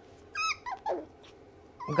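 Toy poodle puppy whining: one high cry that falls in pitch, then two shorter falling cries, in protest at being held for a nail trim.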